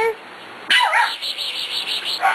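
A Pembroke Welsh Corgi gives one short, high yip during rough play among puppies, followed by about a second of fast, rasping pulses.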